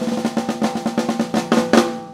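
Drum kit played in a fast run of strokes, about eight a second, a Yamaha Recording Custom kit with a 14x6.5-inch aluminum snare. The loudest hits come near the end.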